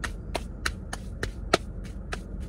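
Hands being rubbed together with freshly applied hand sanitizer, making short sharp smacks about three times a second.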